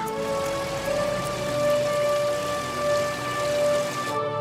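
Song played over speakers, an instrumental passage: one held note over a steady hiss-like wash of noise, much like rain, that cuts off abruptly at the end.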